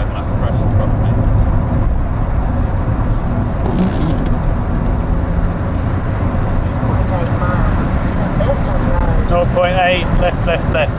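Car interior road noise while driving: a steady low rumble of engine and tyres on the road, heard from inside the cabin.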